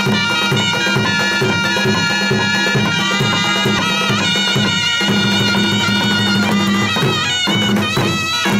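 Kashmiri folk band: two surnai reed pipes playing a sustained, reedy melody over a fast, steady beat on a dhol and a hand drum, dance accompaniment for folk theatre.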